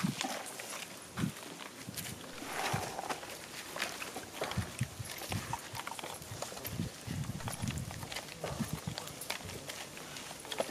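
Irregular light clicks and taps of small paper firecracker tubes being packed by hand into a wooden frame, with duller knocks now and then in the second half.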